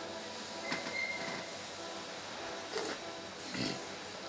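Quiet café room noise: a steady low hum with a few faint knocks, and a short falling voice sound from the man about three and a half seconds in.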